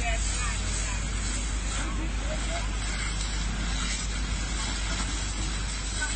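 Water jet from a fire hose spraying onto a burnt-out van and the road, a steady rushing hiss over a low rumble of wind on the microphone. Voices and a short laugh come in about halfway through.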